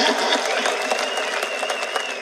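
Crowd applauding steadily, with a faint, high, wavering whistle-like tone running through most of it.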